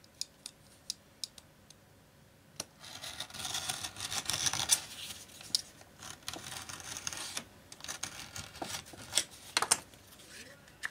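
Carpet knife blade drawn through thick leather: a scratchy rasping cut lasting about five seconds, after a few light ticks. Sharp knocks follow near the end.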